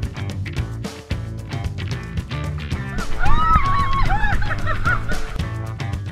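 Background music with a steady beat. About halfway through, a high voice rises and falls over it for a couple of seconds.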